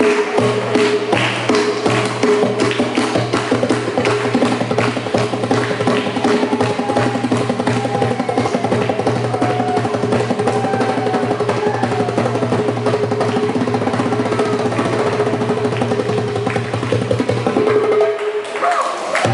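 Hand drum struck rapidly with bare hands in a fast, dense rhythm, the drummer taking over as soloist, over a steady held tone.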